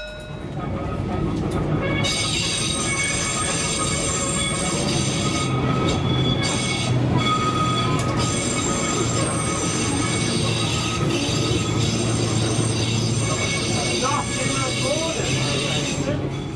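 A 1936 Düwag tramcar running along its track, heard from inside the car: steady wheel-on-rail running noise with a low hum and high squealing tones from the wheels. It grows louder over the first couple of seconds and stays steady after that.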